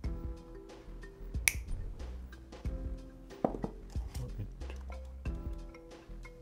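Background music with a steady beat, and about a second and a half in, one sharp snip of side cutters cutting through copper wire.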